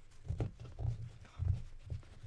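Four soft, low, muffled thumps with faint rubbing: handling noise from hands moving close to the microphone while an eyeshadow swatch is rubbed onto the back of a hand.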